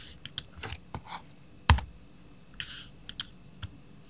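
Typing on a computer keyboard: a run of short, irregular key clicks, with one much louder keystroke a little under two seconds in.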